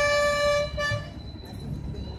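A conch shell blown in one long, steady horn note that stops a little under a second in, leaving a quieter low murmur of the gathering.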